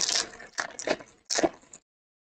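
Foil wrapper of a Bowman Chrome trading-card pack being torn open and crinkled by hand, in three quick crackling rips that stop a little before two seconds in.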